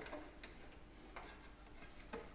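A few faint clicks from the knobs of a vintage table radio being turned by hand: one at the start, one about half a second in, and one just after a second in.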